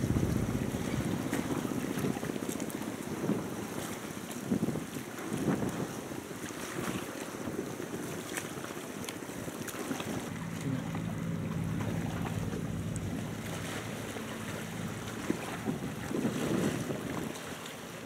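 Scrap-handling machinery working at a quay, heard with wind on the microphone: a steady low engine hum with scattered knocks of scrap metal. The hum holds a steady pitch for a few seconds past the middle.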